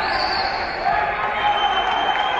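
Spectators in a hall shouting and calling out during a kickboxing bout, with many voices at once.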